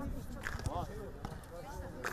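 Children's voices talking and calling in the background, with a few short thumps.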